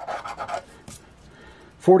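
Silver coin scraping the coating off a scratch-off lottery ticket for about half a second, then a faint tap. A man's voice begins reading a number near the end.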